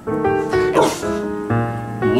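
An American bulldog gives one short bark about a second in, over background piano music with steady held notes.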